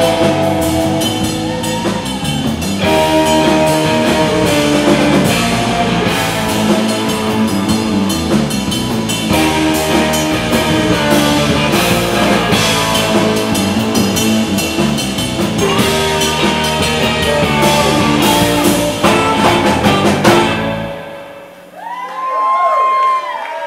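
Live rock band playing an instrumental number on drum kit, electric bass and guitar, and saxophone, picked up by a room microphone. The music winds down and stops about a second before the end, as the first audience whoops come in.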